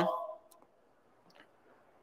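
A man's drawn-out "um" trailing off, then near silence broken by two faint clicks.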